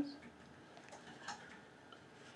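Quiet meeting-room tone with a few faint clicks, the clearest about a second in.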